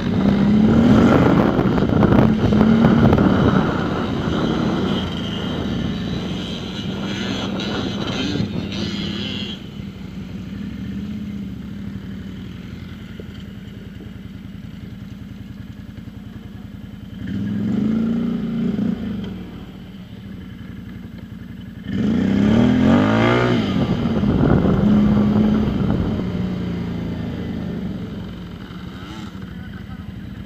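Off-road quad bike engine running along a dirt track, rising and falling in revs twice in the second half, with a dirt bike's engine running close by; the engines settle lower near the end as the riders pull up.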